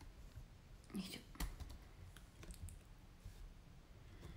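A short murmured vocal sound about a second in, then a few faint, scattered clicks and taps.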